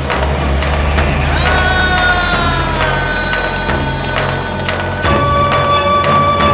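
Film background score: regular percussion beats over a low sustained drone, with a held melody line that enters about one and a half seconds in, slides slowly down, and moves to a new note about five seconds in.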